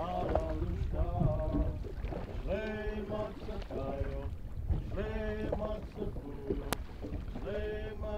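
A chant sung in a Native California language, in short phrases of held, sliding notes with brief pauses between them, over a low background rumble.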